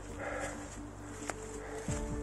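Background music of long held notes, with a brief animal-like call about half a second in.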